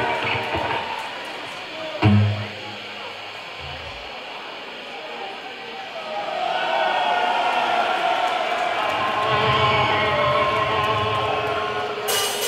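Pause between songs at a heavy metal gig: a couple of low amplified notes from the stage about two and four seconds in, then the crowd's cheering and shouting swells from about six seconds over stray electric guitar noise.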